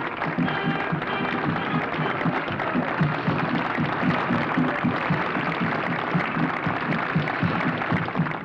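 Music playing together with a large outdoor crowd applauding, the clapping an even patter over the music.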